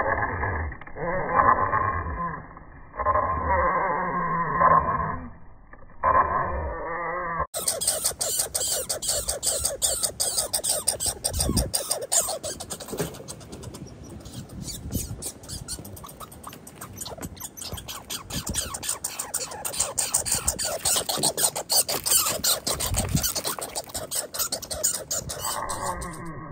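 Two male red squirrels fighting, giving repeated harsh calls. About seven seconds in the sound cuts to a long run of rapid clicking chatter, typical of a red squirrel's territorial rattle.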